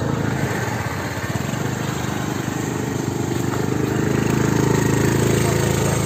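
Small motor scooter engine running with a steady note, getting louder about four to five seconds in.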